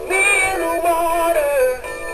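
Big Mouth Billy Bass animatronic singing fish playing its recorded song: one held, wavering sung note that falls off near the end, over a plucked backing.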